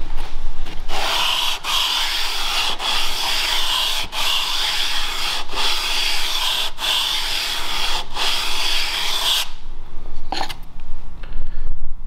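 Steel edge of a cabinet scraper cut from an old bandsaw blade, rubbed back and forth on 320-grit sandpaper while held square against a wooden block: steady abrasive rubbing with a brief break at each turn of the stroke, stopping about nine and a half seconds in. This is the edge being dressed flat and square, free of nicks, before a burr is turned on it.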